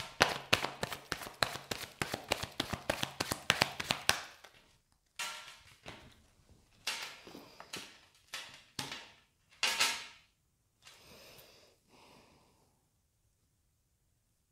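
A deck of tarot cards shuffled by hand, a quick run of light card clicks for about four seconds, then several separate short swishes and slaps as cards are drawn and laid on the table.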